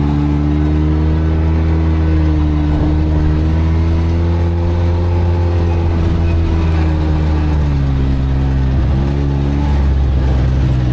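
A side-by-side UTV's engine running steadily on a gravel trail. The engine note climbs slightly in the middle, drops off about two seconds before the end with a brief dip as the throttle eases, then picks back up.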